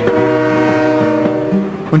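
Steam locomotive whistle blowing one long steady blast, several notes sounding together.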